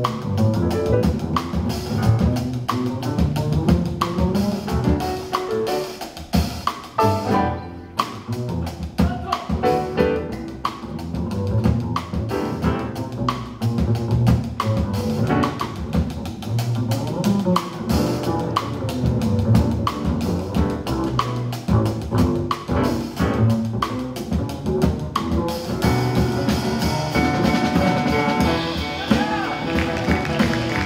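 Live jazz: an upright double bass and a drum kit with cymbals play together in a steady rhythm.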